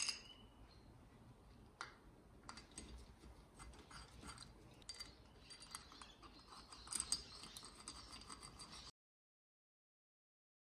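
Faint metallic clicks and clinks of a socket wrench turning the bolts of a two-stroke cylinder's aluminium power valve cover, with a brief cluster of ticks about seven seconds in. The sound cuts off to silence near the end.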